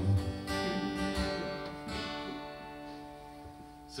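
Acoustic guitar strummed a few times, then a chord left ringing and slowly fading.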